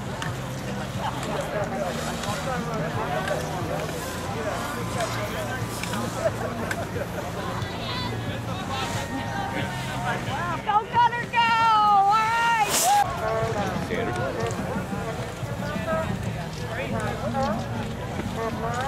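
Spectators chattering and calling out beside a ski race course over a steady low hum, with one loud, wavering shout of encouragement about eleven seconds in, ended by a sharp knock.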